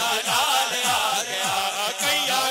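Devotional naat backing: chanted voices over a repeated low bass thud that drops in pitch, about three beats a second.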